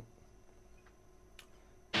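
Near silence, room tone with one faint click about a second and a half in. Just at the end an electric guitar riff comes in loud and sudden.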